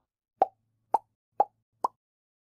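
Four short cartoon pop sound effects, evenly spaced about half a second apart, in an animated logo intro.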